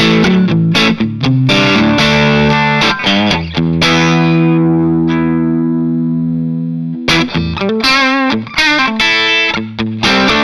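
Electric guitar, a Strat-style with Klein S1 single-coil pickups, played through a BearFoot Sea Blue EQ treble/bass booster pedal into a Palmer DREI tube amp. Strummed chords and riffs, then one chord left ringing for about three seconds before the playing picks up again.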